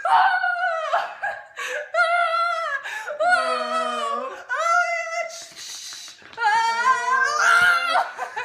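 Two people making mock roller-coaster screams: a run of long, sliding, high-pitched cries mixed with laughter, a lower voice joining in around the middle.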